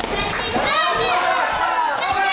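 Several voices shouting at once, excited and high-pitched: spectators yelling during a fight.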